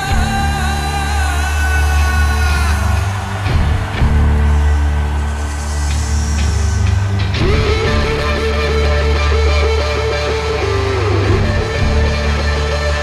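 Live rock band playing an instrumental passage: electric guitar over a loud, heavy, sustained bass line, with long held notes.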